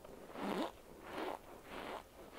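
Chewing a mouthful of compressed cornstarch chunks: crunching in a steady rhythm, about three chews in two seconds.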